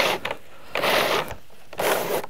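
Vinyl J-channel scraping against the vinyl siding as it is pushed up into place, three rasping strokes about a second apart.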